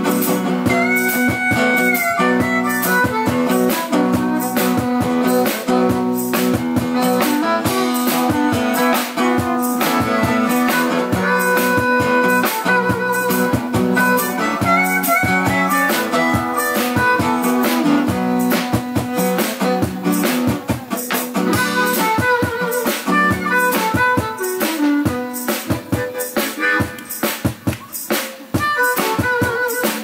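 Live instrumental break: a harmonica playing a sustained melody over a steel-string acoustic guitar strummed in a steady rhythm.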